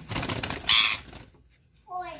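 Rose-ringed parakeet giving one loud, harsh squawk a little under a second in, after some scuffling as it is handled in a tight gap.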